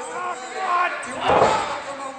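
A heavy thud of a body hitting the wrestling ring, with a booming hall echo, about a second and a half in, over shouting voices.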